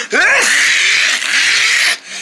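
A person's voice: a short sliding vocal sound, then a long, loud, breathy hiss lasting about a second and a half.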